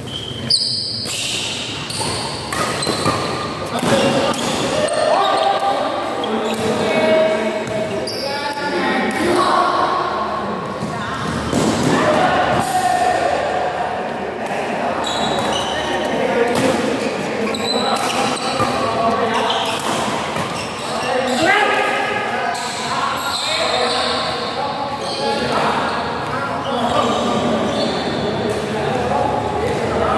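Badminton rally: repeated sharp racket strikes on the shuttlecock, with people's voices talking throughout, all echoing in a large hall.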